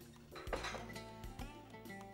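Household items clattering and clanking as someone rummages through a cluttered storage shelf, with a sharp clank about half a second in, over background music.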